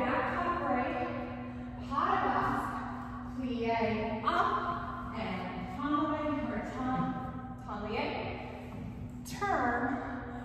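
A woman's voice sounding out the rhythm of the steps in long, sliding syllables rather than words, a new phrase about every two seconds, over a faint steady hum.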